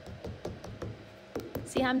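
Wax crayon tapping and scratching on paper in quick, short strokes, several clicks a second. A woman's voice begins near the end.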